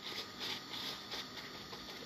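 Faint soft brushing and rustling as a pastry brush spreads butter over a stack of flatbreads wrapped in a cloth, over a low steady kitchen background.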